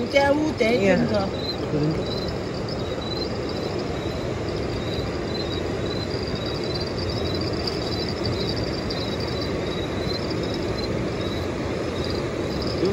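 Steady rushing of river water. A man's voice calls out briefly at the start, and a faint high chirp repeats about twice a second above the water.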